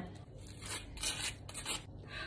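A table knife scraping butter across a slice of toast in several short strokes, a dry rasping sound.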